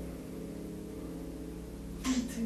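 A held piano chord with harp, several steady notes ringing on together and slowly fading.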